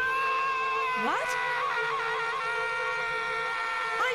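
A long, high-pitched cartoon scream that rises into a held note and stays at nearly one pitch for a few seconds, with a quick upward swoop about a second in, over music.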